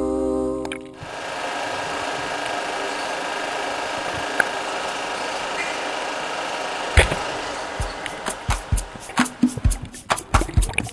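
A song ends within the first second, leaving the steady hiss of a camera recording underwater. About 7 seconds in there is one sharp knock, and a new song starts with rhythmic, evenly spaced strums near the end.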